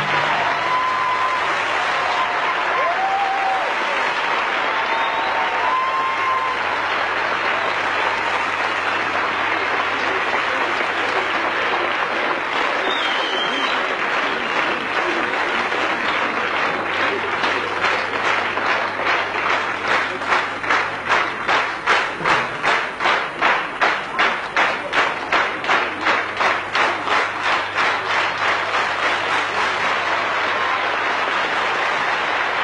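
Large concert audience applauding, with a few shouts in the first seconds; from about halfway through, the applause turns into rhythmic clapping in unison at a fast steady beat.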